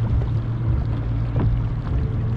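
Motorboat engine running steadily at low speed, a continuous low hum.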